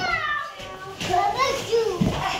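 Young children's voices at play: a high-pitched call sliding down in pitch at the start, then quieter chatter.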